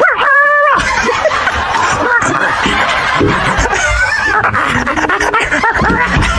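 A woman imitating a dog's bark: one held, wavering 'woof' of about half a second near the start, then laughter.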